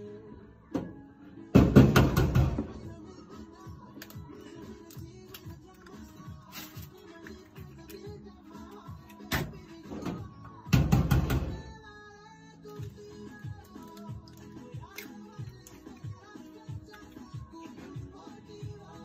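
Background music, broken twice by loud thunks, about a second and a half in and again about eleven seconds in: eggs being cracked against a stainless steel bowl.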